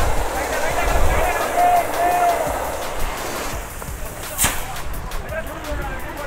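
Distant men's voices calling over a steady, noisy outdoor background, with one sharp click about four and a half seconds in.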